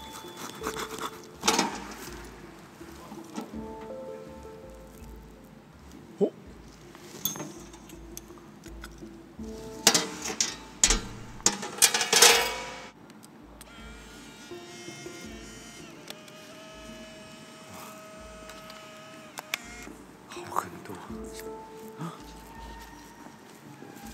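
Quiet background music with steady sustained notes, broken by several handling knocks and rustles. The loudest cluster comes about ten to twelve seconds in.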